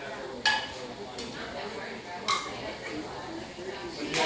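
Children's toy pots clattering as a toddler knocks them about: one sharp clank about half a second in, the loudest, then a few lighter knocks, the last a little past two seconds. Faint voices talk in the background.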